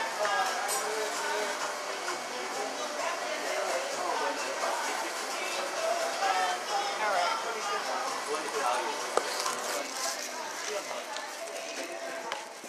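Indistinct voices of people talking in the background, unbroken throughout, with one sharp click about nine seconds in.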